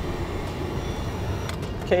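Electric heat gun blowing hot air onto heat-shrink butt connectors: a steady rush of air from its fan that stops about a second and a half in.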